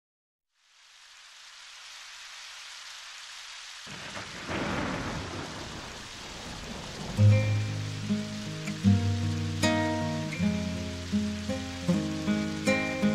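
Steady rain fading in, with a roll of thunder about four seconds in. About seven seconds in, the song's instrumental intro starts over the rain, notes plucked one at a time.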